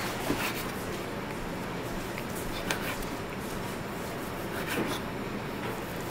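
A large cleaver slicing chilled, firm cooked beef brisket thinly on a wooden chopping block: soft cutting and rubbing, with a few light knocks of the blade on the board.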